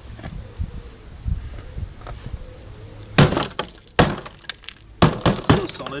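Rusted steel of a VW Beetle chassis floor pan being broken away, with a few sharp cracks and knocks in the second half as corroded metal gives way.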